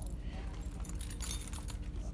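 Small metal objects jingling and clinking in quick, irregular little clicks over a faint steady hum.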